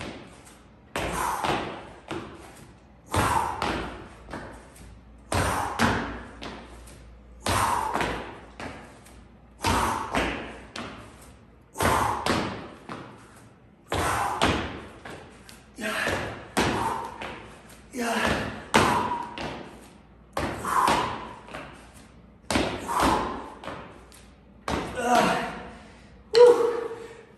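Kettlebell snatch jumps on a concrete garage floor: twelve landings, about one every two seconds, each a thump followed by a hard exhale.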